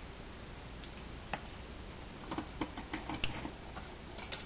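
Aluminium tea kettle at the boil on an alcohol burner: a steady low hiss, with a scatter of light clicks and taps in the second half.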